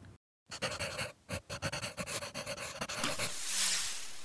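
Quick, rhythmic, breathy panting begins just after a brief dropout. A rising hiss builds underneath it near the end.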